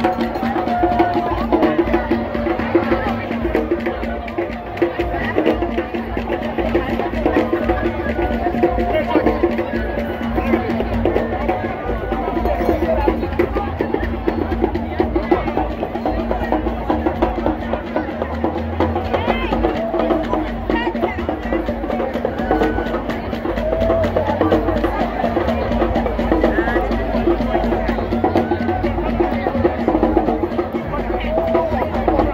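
Live drumming in a fast, unbroken rhythm, with crowd voices singing and calling over it.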